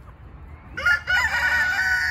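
A rooster crows once, starting a little under a second in: a loud, long, held call that runs on past the end.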